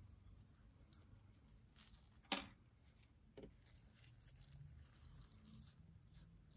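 Near silence: quiet room tone, broken by one sharp click a little over two seconds in and a fainter click about a second later.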